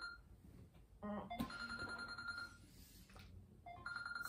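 Smartphone alarm ringtone sounding, a steady electronic tone in repeated phrases, with a woman's sleepy groan about a second in.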